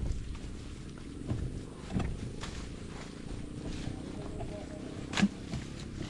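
Footsteps and rustling through tall grass and weeds, over a low rumble of wind on the microphone, with a sharp snap about five seconds in.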